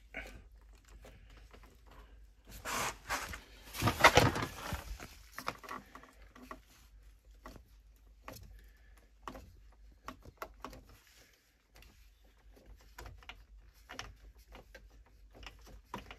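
Clicks, taps and scrapes of metal handling as a brass thermostatic valve insert on a Polypipe underfloor heating manifold is turned by hand, with a louder stretch of clattering noise about three to five seconds in.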